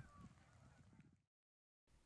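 Very faint honking of distant geese over quiet outdoor ambience, cutting to dead silence a little over a second in.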